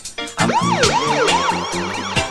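A DJ siren sound effect over reggae music: a wailing tone that swoops up and down about four times in quick succession, starting about half a second in.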